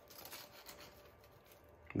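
Faint scraping and clicking of metal tongs against an air fryer's wire-mesh basket as chicken breasts stuck to the mesh are pried off.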